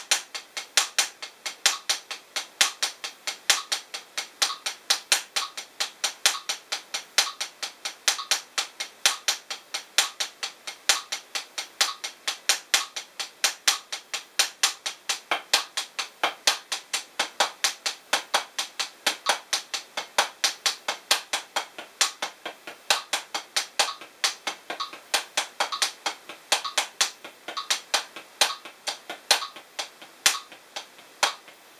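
Hickory 7A drumsticks playing a steady single stroke roll of sixteenth notes on a rubber practice pad, alternating hands at about four strokes a second, with a slightly louder stroke about once a second.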